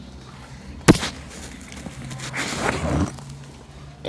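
A sharp knock about a second in, then rustling and scraping as things are handled and pulled out of a school book bag.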